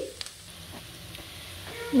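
Food frying in butter and oil in a pot: a soft, steady sizzle.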